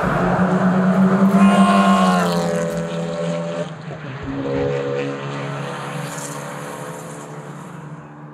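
Hyundai i30 N TCR race car's engine running hard, its pitch rising and then falling, then a steadier note that fades away toward the end.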